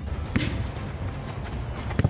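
A football volleyed on an outdoor pitch: a sharp thud of boot on ball at the very end, after a softer thump about a third of a second in, over a steady low rumble.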